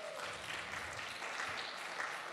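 Light applause from a small congregation, a steady even clapping that sits well below the level of the speech around it.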